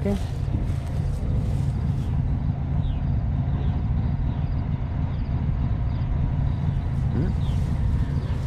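Diesel truck engine idling with a steady, even low rumble.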